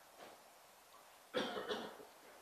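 A person coughs once, briefly, about one and a half seconds in, against faint room tone.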